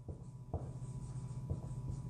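Red dry-erase marker writing on a whiteboard: a few faint, short strokes and taps as the words are written, over a steady low hum.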